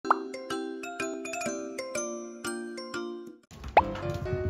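An edited-in intro jingle of short, quickly struck pitched notes, opened by a brief rising 'pop' sound effect. Near the end the jingle breaks off at a cut, room noise comes in, and a second, louder rising pop follows.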